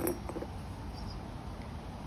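A pause with only steady low background noise, with a faint click at the very start and a few faint ticks in the first half second.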